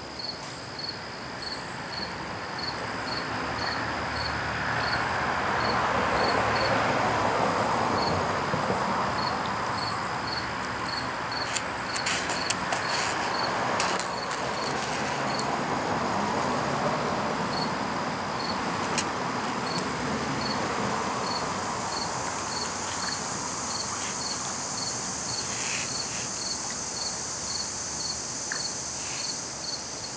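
A cricket chirping steadily in the background, about two short high chirps a second, pausing for a few seconds in the middle. Under it a broad rushing noise swells and fades in the first half, and a few light clicks come in the middle, likely from handling the metal ball chain.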